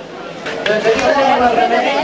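People talking and chattering over one another: a crowd of voices.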